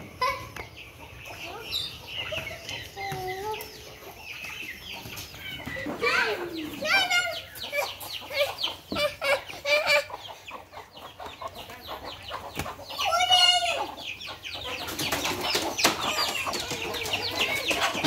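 Domestic hens clucking and calling in short, irregular bursts, with louder squawking calls about a third and three-quarters of the way through.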